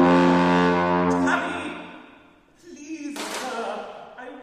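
Wind band holding a full chord over a steady low brass note, released about a second and a half in and dying away to near silence; the band comes back in softly just after, with one sharp percussive hit about three seconds in.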